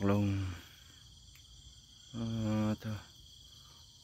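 A steady, high-pitched chorus of insects trilling without a break.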